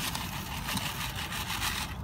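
Dirt and sand being shaken back and forth through the wire-mesh screen of a wooden sifting box: a steady scratchy, rustling scrape of grit over the screen.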